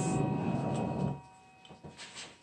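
Handheld torch flame burning with a steady rushing hiss as it is passed over wet acrylic paint to raise bubbles; it cuts off a little over a second in, leaving a few faint ticks.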